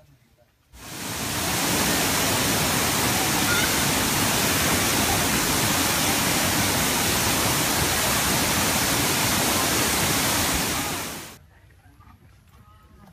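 Loud, steady rushing of water, starting abruptly about a second in and cutting off near the end.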